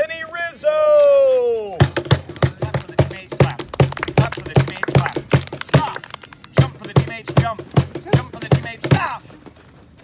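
A long, drawn-out shout that falls in pitch, then a Pearl cajón slapped in a steady, quick beat for about seven seconds, with children clapping along. The drumming stops about a second before the end.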